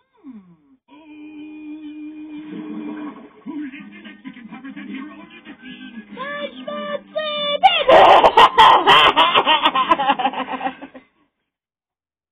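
Cartoon soundtrack playing through a television's speaker: music and character voices, growing much louder about eight seconds in. It stops suddenly about a second before the end as playback is paused.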